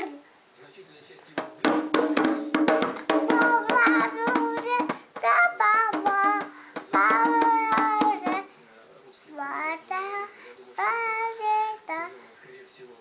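A toddler beating a small rope-tensioned hand drum with his palms, many quick uneven strikes, while singing along in a child's voice. The drumming stops about eight seconds in, and a few short sung phrases follow.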